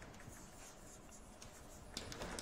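Chalk writing on a blackboard, faint: light scratching strokes, with a sharper chalk tap near the end.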